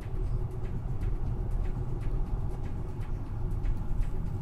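Low, steady rumble of engine and tyre noise heard inside the cabin of a 2015 Hyundai Sonata while it is being driven.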